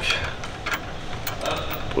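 A few faint metal clicks and scrapes as a bolt and washer are worked by hand into a sway bar end link mount, over a low steady hum.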